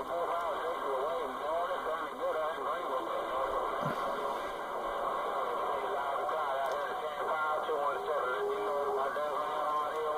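A CB radio receiving on AM, channel 28, plays garbled, distant voices through its speaker. The voices are skip stations calling in under steady static and hiss. The reception is rough but readable.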